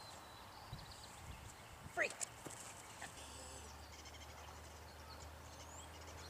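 Faint outdoor ambience with distant birds chirping. About two seconds in there is one short rising call, followed by a click, and a low steady hum comes in about three seconds in.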